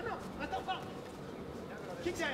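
Faint shouting voices from people at ringside during a kickboxing bout.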